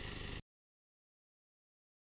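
Silence: the sound track cuts off abruptly about half a second in and stays completely silent, after a brief tail of steady low background hum.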